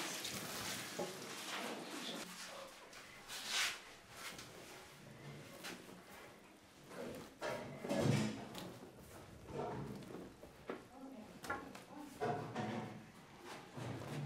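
Hot melted margarine and olive oil poured onto flour in a large metal mixer bowl, then gloved hands working the fat into the flour: soft, irregular rustling with a few dull knocks. This is the hot fat scalding the flour before kneading.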